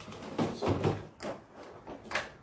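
Hard plastic toy fruit pieces knocking against a plastic toy blender jar as they are put in, a few short clacks.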